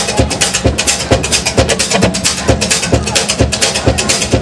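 Live band playing an up-tempo number: drum kit keeping a steady beat, a low kick about twice a second under busy high cymbal or hi-hat strokes, with acoustic and archtop electric guitars and upright bass.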